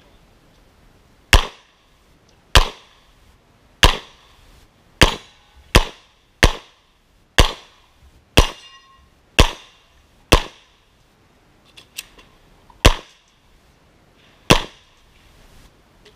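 Springfield XD(M) 5.25 pistol fired about a dozen times at a steady pace of roughly one shot a second, each shot a sharp crack with a short ring-out. There is a longer pause with a couple of faint clicks before the last two shots.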